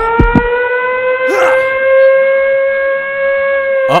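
A siren wail, one long tone that rises slowly in pitch and then holds steady. A few short knocks come at the very start.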